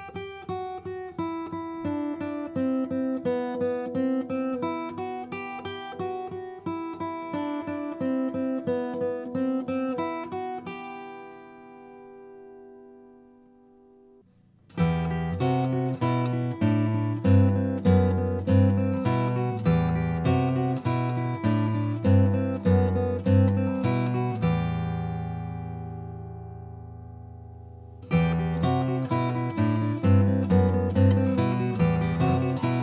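Acoustic guitar played fingerstyle: first a melody line picked alone with the middle and index fingers, which rings out and fades about ten seconds in. After a short pause a louder passage starts with a walking bass under the changing melody, in a harp-style finger pattern; it rings out, and the pattern starts again near the end.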